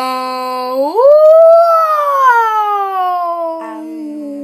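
A boy imitating a whale call with his voice: one long, loud call that holds low, swoops up about a second in, then slowly slides back down.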